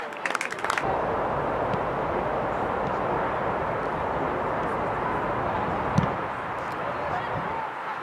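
Open-air sound of a youth football match: steady wind noise on the microphone with faint shouts from players. A single thud of the ball being kicked about six seconds in.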